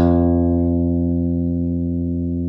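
A guitar chord rings out and slowly fades after being strummed.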